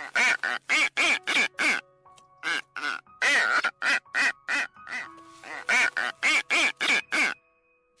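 Boobies calling: a long series of short calls, about four or five a second, in runs with brief pauses, stopping shortly before the end.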